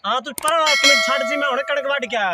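Subscribe-button sound effect: a sharp mouse click about half a second in, followed by a bright bell ding that rings steadily for over a second, laid over men's raised voices.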